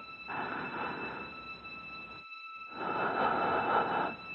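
Film-trailer sound design: two swells of rumbling noise, the second louder, over steady high ringing tones, with a brief break a little after two seconds in.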